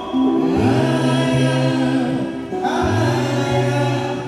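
Gospel singing by a male lead into a microphone with group harmony, in long held notes, with a short break between phrases about two and a half seconds in.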